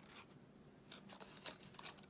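Wrapper of a single chocolate square crinkling as it is peeled away, a few faint short crackles from about the middle to near the end.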